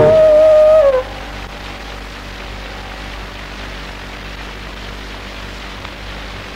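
Carnatic bamboo flute holding a long note that bends down in pitch and stops about a second in. A steady recording hiss with a faint low hum follows.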